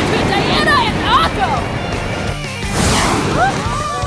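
Animated soundtrack mix: background music and excited voices, with a rushing whoosh about three seconds in.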